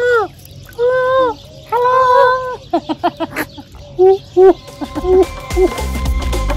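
A bird calling: three drawn-out, arching calls about a second apart, followed by a string of shorter, quicker notes. Background music with a beat comes in near the end.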